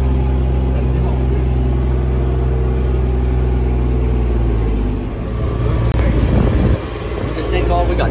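Kubota RTV 900's diesel engine running steadily for about five seconds, then its sound turns rougher and uneven, with an abrupt short break about six seconds in.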